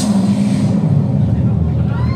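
Live metal band's closing chord, distorted electric guitars and bass held in a loud, steady low rumble through the PA.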